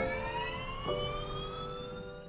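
Electric race car's drive motor whining as it accelerates, its pitch rising steadily. Held music chords come in about a second in.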